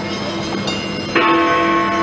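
The bells of Big Ben in the Elizabeth Tower. A stroke still rings on, and a fresh bell strike lands about a second in and keeps ringing.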